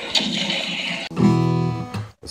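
A rushing hiss for about the first second, then an acoustic guitar chord strummed and left ringing.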